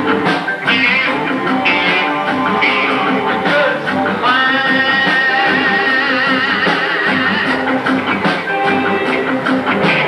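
A live rock band playing, led by electric guitar. From about four seconds in, a high held lead line comes in, its pitch wavering up and down.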